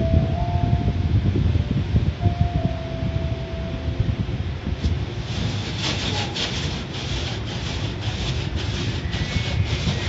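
Automatic car wash heard from inside the car: spinning cloth brushes rubbing over the body and windshield with a steady low rumble. From about five seconds in, water spray and cloth strips slap the glass in rapid hissing strokes.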